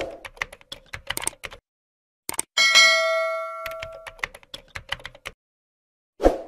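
Sound effects for an animated subscribe screen. A quick run of keyboard-typing clicks comes first, then a bright bell ding about two and a half seconds in that rings on for over a second, then more typing clicks.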